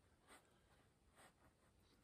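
Near silence, with a few faint soft strokes of a fine paintbrush on canvas.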